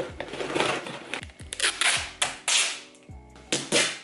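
Cardboard shipping box being folded shut by hand: a series of loud scrapes and rustles of the flaps, the strongest about halfway through and near the end. Background music with a steady beat runs underneath.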